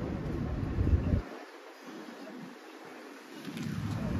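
Wind buffeting the microphone in gusts: a loud low rumble for the first second or so, dying away, then rising again near the end over faint outdoor background noise.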